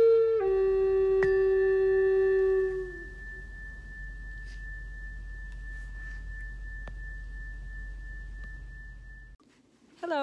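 Solo wind instrument holding the last notes of a slow melody, stepping down twice and fading out about three seconds in. A faint, steady high tone lingers, then cuts off suddenly near the end.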